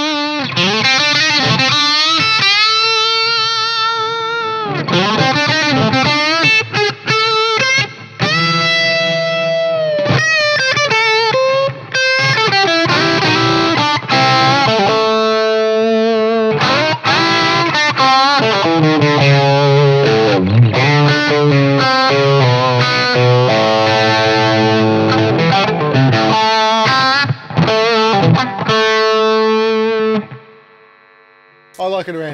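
Fender Vintera Telecaster played through a driven valve amp with a boost and a mid-boost pedal engaged, its mid frequency swept and boosted so the midrange sits forward. The notes are sustained, distorted lead lines with bends and vibrato.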